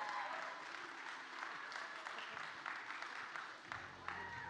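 Congregation applauding: many hands clapping in an even patter that slowly tapers off.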